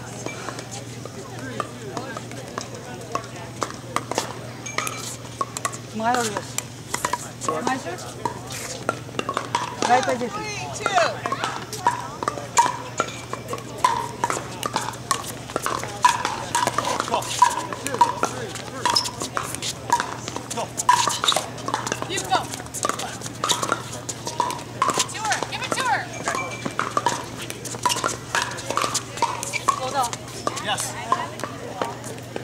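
Pickleball paddles striking a hard plastic ball: many short, sharp pops at irregular intervals. People talk in the background.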